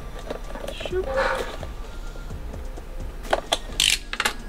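Cardboard figure box being opened with a small cutter: a few faint clicks, then several short, sharp scratchy cuts through the tape seal near the end, the last the loudest.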